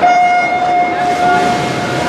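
Electronic starting signal of a swimming race: one steady beep that comes in suddenly and is held for about two seconds.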